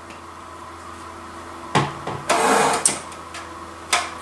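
Plastic handling sounds at a food processor: a sharp click a little before halfway, a short hissing rush of about half a second as a plastic honey squeeze bottle is worked over the bowl, and another click at the end as the processor's clear plastic lid is picked up.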